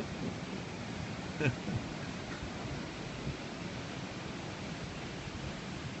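Steady outdoor background hiss picked up by a phone microphone, with a brief faint vocal sound about one and a half seconds in.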